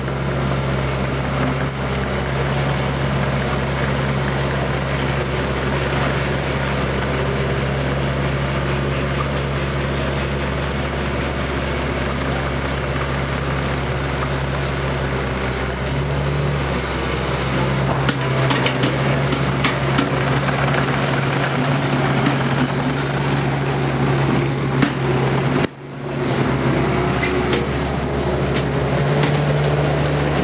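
Engine of heavy construction machinery running steadily, with scattered clanks on top. The sound cuts out for a moment near the end, then carries on.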